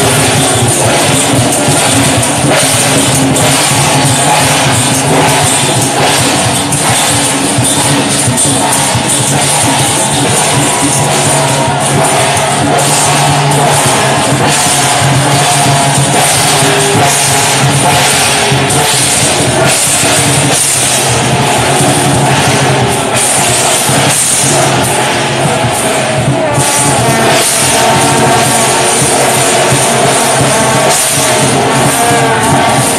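Chinese lion-dance procession percussion: hand-held brass gongs struck with mallets and cymbals clashed in a fast, steady, unbroken beat, loud and dense.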